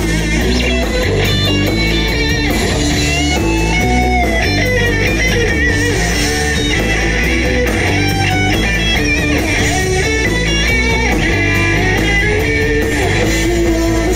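Live rock band playing an instrumental stretch without singing: electric guitars to the fore, with melodic lead lines over bass and drums.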